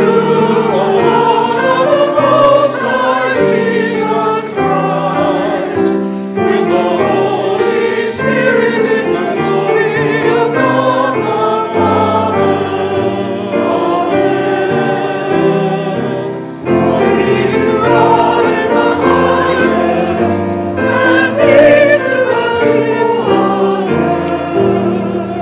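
Church choir and congregation singing a hymn together, with a brief break between phrases about two-thirds of the way through.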